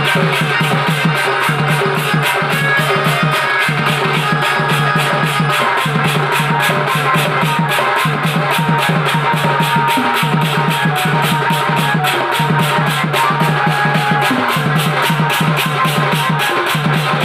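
Loud live folk music from a stage band: a barrel drum beaten by hand in a fast, even rhythm, with a keyboard playing over it.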